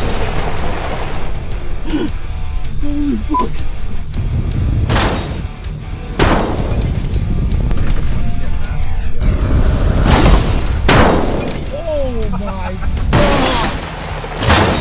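A pickup truck ramming the rear of a parked car: five or six heavy crash impacts as the collision is replayed, over background music.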